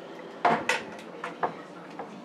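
Light clatter of kitchen items being handled: a few sharp clicks and knocks, two close together about half a second in and two softer ones past the middle.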